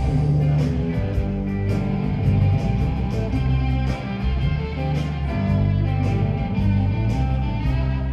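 A live rock band playing: electric guitar over a bass line and drums, with cymbal hits keeping a steady beat.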